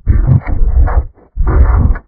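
Loud, heavily distorted and bass-heavy edited audio, muffled with no treble, in two choppy chunks broken by a brief dropout a little after a second in.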